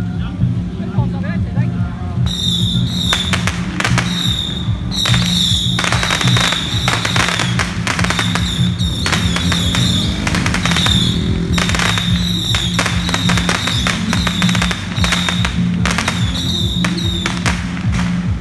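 Strings of firecrackers going off in rapid, crackling bursts, starting about two seconds in and continuing almost to the end. A high warbling whistle comes and goes through them, over a steady low drone.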